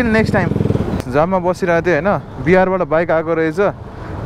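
A motorcycle engine running, its steady firing pulses loudest in the first second, then a voice talking over it for most of the rest.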